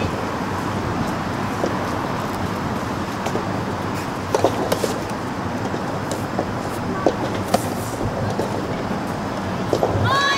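Soft tennis rally: a few sharp pops of the rubber ball being struck and bouncing, first near the middle and again about two and a half seconds later, over a steady outdoor background rumble.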